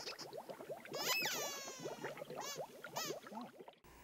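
Soft cartoon bubble sound effects: a stream of quick rising blips, with a falling whistle-like glide about a second in and two short squeaks later on. The sound cuts off abruptly just before the end.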